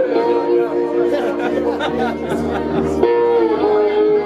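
Live band playing an instrumental passage: an amplified resonator guitar sustains chords over bass and drums, the chord changing at the start and again about three seconds in. Audience chatter runs underneath in a reverberant room.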